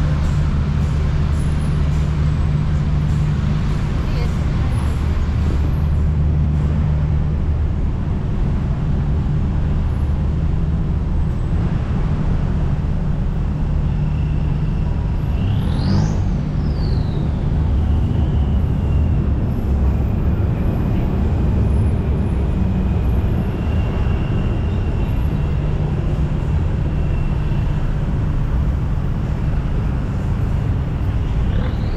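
Busy city road traffic: car and taxi engines running and idling in a steady low rumble. About halfway through, a brief whistle rises and then falls.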